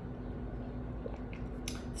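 Quiet room tone with a steady low hum and a few faint mouth clicks of someone chewing food.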